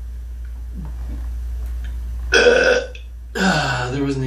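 A man burping loudly after drinking a beer: a short, partly forced burp a little over two seconds in, then a second, longer burp near the end.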